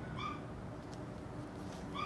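Two short, high-pitched animal calls, about a second and a half apart.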